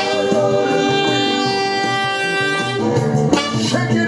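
Alto saxophone playing along with a soul backing track: one long held note over the band and a singer, then short stabbed notes with the band near the end.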